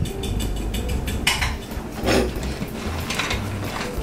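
Kitchen clatter of dishes and utensils on a counter: many light clicks, with a couple of louder knocks about one and two seconds in, over a low steady hum.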